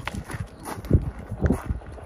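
A few irregular low knocks and scuffs, spaced unevenly across two seconds.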